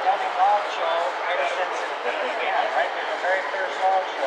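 Background chatter: several people talking at once, their voices overlapping with no single voice clear.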